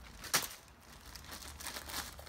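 Plastic packaging crinkling as a Great Dane mouths and carries a bag of green beans, with one sharp crackle about a third of a second in.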